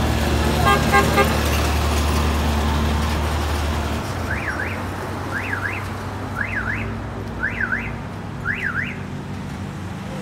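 Roadside traffic: a vehicle engine runs low and heavy until about four seconds in, with a few short horn toots about a second in. Then comes a run of five evenly spaced electronic chirps, about one a second, each rising, falling and rising again, like a car alarm.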